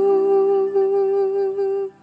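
Pop ballad ending: a female voice holds one long final note over sustained backing chords, and both stop just before the end.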